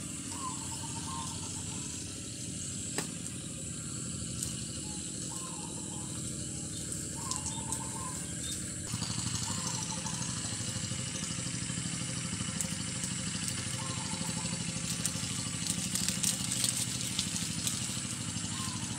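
A motor running steadily with a low, even throb, with faint short chirps now and then and light crackling near the end.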